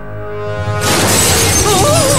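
Orchestral trailer music, then about a second in a sudden loud crash of shattering glass, with a wavering high tone near the end.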